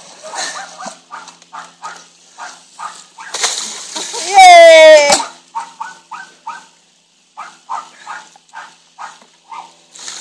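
A small dog barking and yipping in short, repeated calls, with one loud, drawn-out cry that falls slightly in pitch a little past four seconds in.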